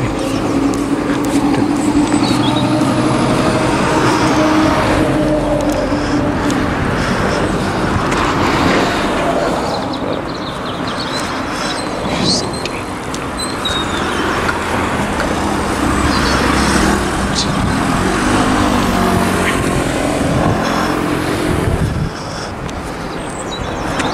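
Road traffic on a busy main road: cars and buses driving past in a steady rush of tyre and engine noise, with one vehicle's engine hum standing out for the first few seconds.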